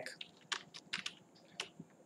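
Typing on a computer keyboard: a quick, irregular run of several light keystrokes that stops a little before the end.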